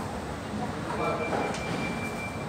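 A single steady electronic beep, about a second and a half long, starting about a second in, over a murmur of indistinct voices and low room rumble.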